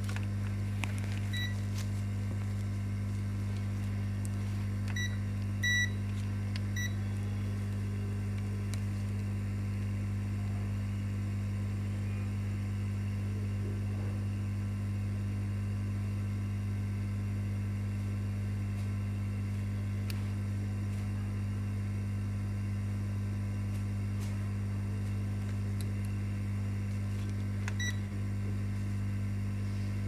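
Digital multimeter beeper giving a few short, high beeps as the meter is switched and its probes touch the circuit board, one slightly longer beep about six seconds in and another near the end. A steady low electrical hum runs underneath throughout.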